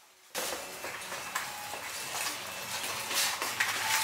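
A brief moment of near silence, then the background of a shop: a steady hum of room noise with a few light clicks and clatter.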